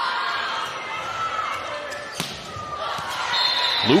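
Arena crowd noise during a volleyball rally, with one sharp smack of a hand striking the ball about two seconds in.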